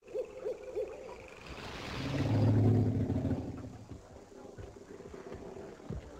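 Night swamp ambience with animal calls: three quick chirping calls in the first second, then a deep hooting call that swells and is loudest two to three seconds in before fading.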